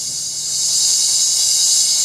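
Cymbal roll from the show choir's band, a high hissing wash swelling steadily louder as the opening number begins.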